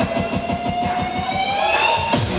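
Hardcore dance music at a build-up: a synth tone rising steadily in pitch over a rapid drum roll, played loud.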